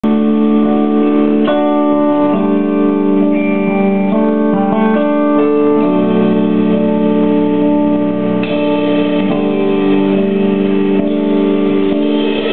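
Electronic stage keyboard playing held, organ-like chords in a slow progression, a new chord every second or two, as the instrumental introduction to a song.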